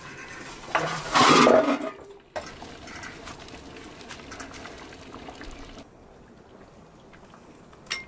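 Metal lid of a large aluminium cooking pot lifted and clattering for about a second, then the soup simmering in the open pot over the wood fire. A single sharp clink near the end as the ladle touches the pot.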